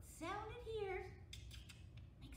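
A woman's voice in a rising and falling sing-song, chanting a nursery rhyme, with a few short hissing consonants.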